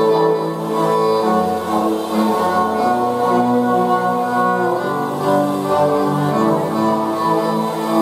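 Live instrumental music led by a bowed violin playing long held notes over a low bowed string instrument.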